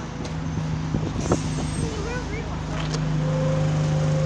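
Alexander Dennis Enviro200 single-deck bus's diesel engine running at a stop, a steady hum that grows louder as the bus is boarded, with a few short clicks and a higher tone joining near the end.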